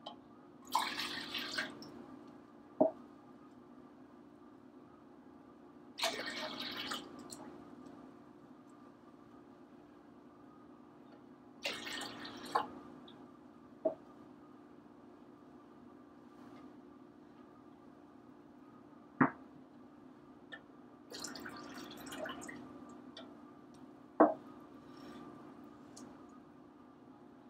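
Liquid poured from cups into a pitcher in four separate pours of a second or two each, each followed by a sharp knock as the cup is set down. A faint steady low hum runs underneath.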